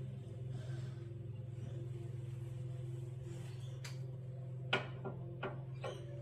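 A steady low hum with a handful of sharp clicks and taps in the second half, the loudest about three-quarters of the way through.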